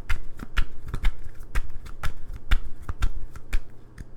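A tarot deck being shuffled by hand: a quick, uneven run of sharp card slaps and flicks, about three or four a second, that thins out near the end.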